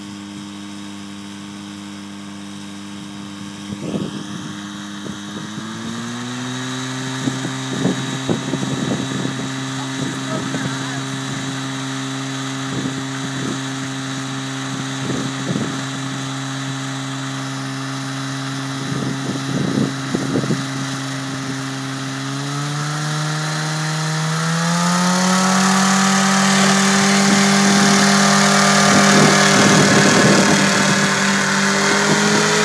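Powered parachute trike's propeller engine running, then revving up in two steps: a first rise about five seconds in, and a longer climb in pitch and loudness from about 22 seconds as the throttle is opened to lift the canopy for takeoff.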